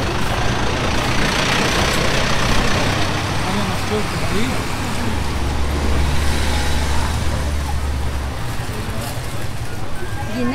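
Street traffic noise, with a motor vehicle's engine running close by; its low hum strengthens for about three seconds in the middle.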